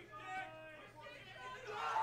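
Indistinct talking and crowd chatter, with no clear words.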